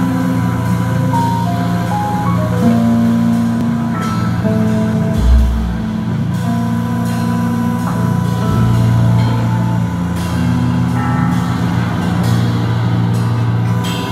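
A live band playing a slow, sustained passage: long held low bass notes under shifting higher held tones, with one deep low thud about five seconds in.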